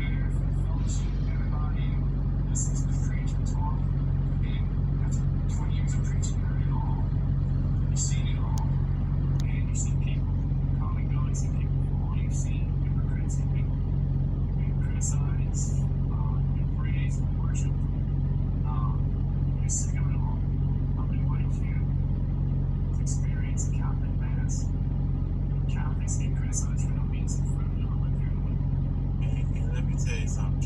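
Faint, indistinct speech, as from a video playing on a phone's speaker, over a steady low hum.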